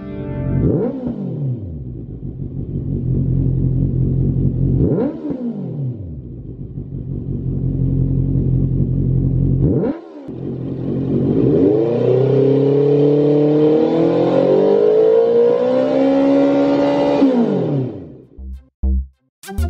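Honda CB650F's inline-four engine running through a Lextek GP8C carbon-fibre slip-on silencer, revved while stationary. Three quick blips of the throttle, about a second, five seconds and ten seconds in, each falling back to a steady idle. Then a long rev held and slowly climbing for about six seconds before dropping off near the end.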